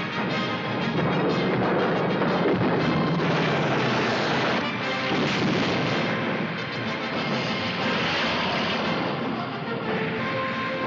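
Film soundtrack: orchestral score over the steady din of a de Havilland Mosquito's twin Rolls-Royce Merlin piston engines, with anti-aircraft fire.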